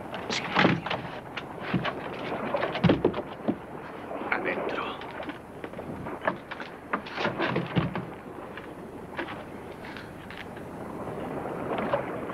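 Scattered knocks and thuds of wooden barrels and lids being handled, with a hushed voice, over the steady hiss of an old film soundtrack.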